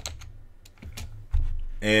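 A few computer keyboard keystrokes as the last letters of a word are typed, followed by a short low thump about a second and a half in.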